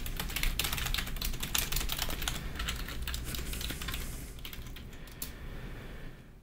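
Typing on a computer keyboard: a rapid run of key clicks that thins out near the end.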